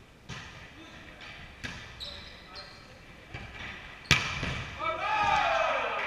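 Volleyball being played in a gym hall: a serve and a few sharp hand-on-ball contacts a second or so apart, the loudest smack about four seconds in, followed by a player's long shout falling in pitch.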